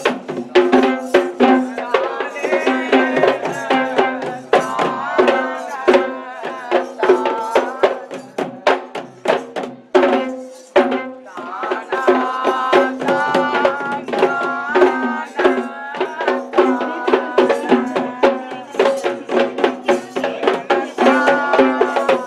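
Sri Lankan geta bera drums, double-headed barrel drums beaten by hand, playing fast interlocking rhythms to accompany Kandyan dancing, with a melodic line held over a steady note above the drumming. The playing thins briefly about ten seconds in, then picks up again.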